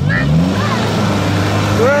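Jeep Cherokee XJ engine revving up under load as the SUV climbs through deep mud ruts. The revs rise in the first half second and are then held high, over the noise of the tyres churning in the mud.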